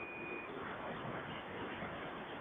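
Receiver hiss of a radio transceiver on an open channel between transmissions, with no station coming through. A faint steady whistle, a carrier heterodyne, is heard for about the first half second and then stops.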